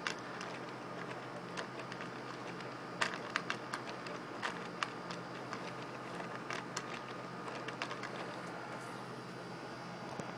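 Hand-turned camshafts and legs of a laser-cut plastic walker robot clicking and clattering lightly, with irregular small clicks over a faint steady hum. The sharpest click comes about three seconds in.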